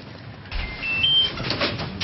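Electronic door lock playing three short rising beeps as it unlocks, followed by a second of clicks and rustling as the door opens.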